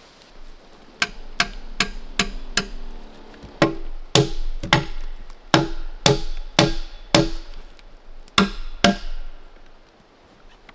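Hatchet blows knocking on the logs of a wall. A quick run of five sharp, ringing knocks comes first, then about nine heavier, deeper blows roughly half a second apart.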